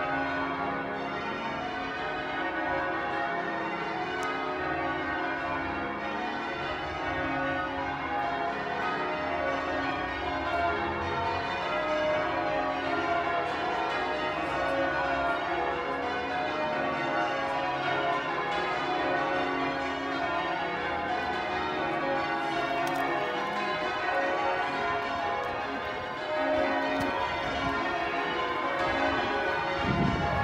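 Church tower bells change ringing: a continuous peal of many overlapping bell tones.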